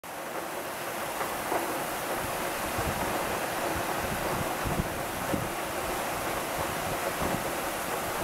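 Heavy rain falling as a steady rush, with gusty wind buffeting the microphone.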